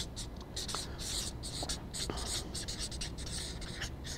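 Marker pen writing on flip-chart paper: a run of short, irregular scratchy strokes as a word is written out.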